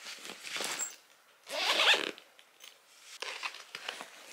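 A zipper pulled in quick rasping strokes, the longest and loudest about one and a half seconds in, among the rustle of bags and fabric being packed into a hard-shell suitcase. Light knocks and rustling follow near the end as the suitcase lid is swung shut.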